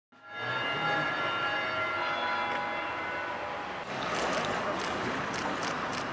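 A chord of several steady tones held for almost four seconds, then an abrupt change to street noise with scattered light taps.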